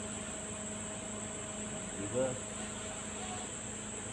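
Steady high-pitched insect chorus with a faint steady low hum under it; one short spoken word about two seconds in.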